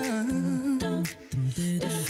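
All-female a cappella vocal group singing close harmonies over beatboxed percussion, with a brief break a little past the middle.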